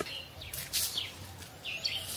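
Small birds chirping: several short, high calls.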